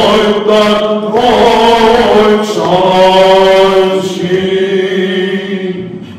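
Small group of male cantors singing Greek Orthodox Byzantine chant, the melody moving over a steady held low drone note (the ison).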